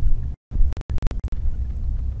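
Steady low rumble of a truck's engine and road noise heard inside the cabin while driving. The sound cuts out twice near the start, with a few sharp clicks in between.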